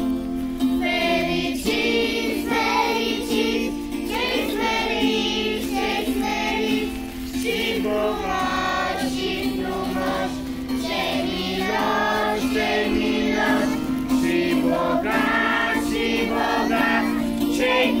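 Background song: a group of voices singing together over a steady, held accompaniment.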